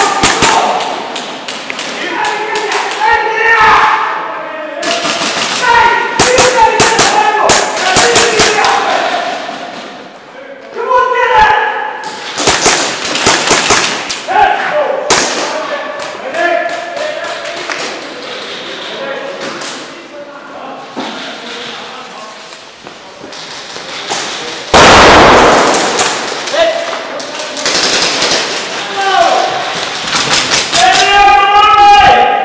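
Airsoft guns, including a Kriss Vector replica, firing in repeated bursts of sharp clicking shots in a large echoing hall, with players shouting over them. A single loud thump stands out late on.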